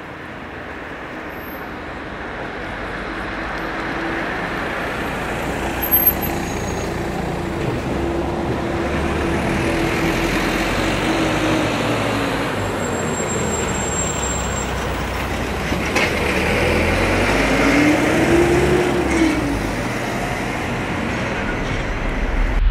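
Street traffic: a heavy motor vehicle's engine running and passing, swelling in level over the first ten seconds, with its engine note rising and falling again near the end. A short knock sounds about six seconds in.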